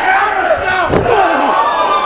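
A wrestling crowd shouting and yelling close by, with one sharp hit about a second in as two wrestlers brawl at ringside.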